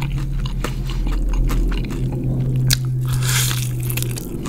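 Close-up mouth sounds of biting into and chewing crispy fried chicken: many small crackling crunches, with one bigger crunch late on, over a low steady hum.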